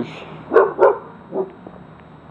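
A dog barking: two quick loud barks, then a fainter third.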